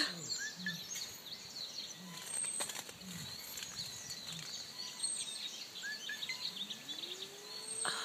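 A bee buzzing in short bursts at lemon blossoms, over many small birds chirping in the background. Near the end a low hum rises and falls.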